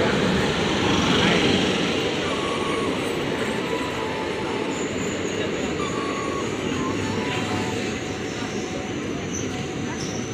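Passenger train coaches rolling past along a platform, with the steady noise of wheels on the rails. It is loudest about a second in and then holds steady.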